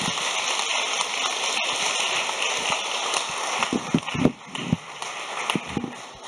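Audience applauding steadily, then thinning out with a few low thumps near the end.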